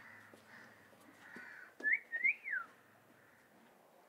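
A short two-note whistle about two seconds in: a quick rising note, then a longer note that rises and falls.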